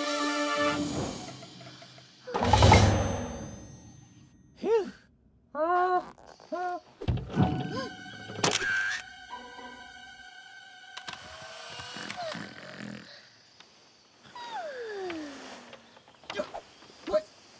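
Cartoon soundtrack of music and comic sound effects: a loud thump a couple of seconds in, a run of short squeaks, another thump about seven seconds in, and a long falling tone near the end.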